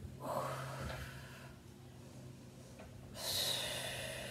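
A woman breathing hard through the effort of holding a one-legged yoga balance pose. There are two audible breaths: one at the start lasting about a second and a half, and a sharper, brighter one about three seconds in. A faint steady low hum runs underneath.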